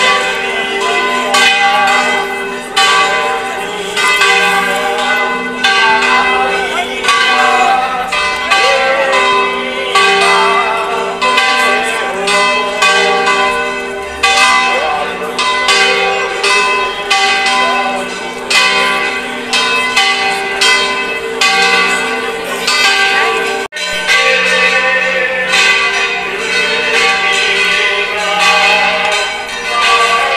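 Church bells pealing from the bell tower for a religious procession, many overlapping strokes ringing on without a break. The sound cuts out sharply for an instant about three-quarters of the way through.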